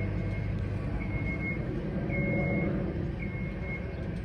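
Steady low rumble of street traffic, with a short high-pitched beep repeating about once a second.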